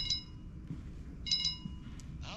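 A chime sounding twice, just over a second apart; each ring starts sharply and fades within about half a second.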